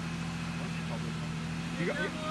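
A vehicle engine idling steadily with a low, even hum. A voice starts briefly near the end.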